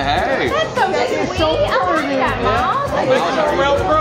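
Several people talking over one another in a busy restaurant, with background music carrying a steady beat underneath.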